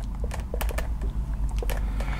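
Whiteboard marker writing on a whiteboard: a quick, irregular run of short scratches and taps as letters are written and underlined, over a low steady hum.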